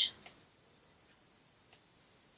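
A few faint, scattered ticks of a stylus tapping on a pen tablet while a word is handwritten, otherwise near silence.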